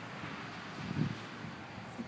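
Steady outdoor background noise with no distinct source, with a faint short low sound about a second in.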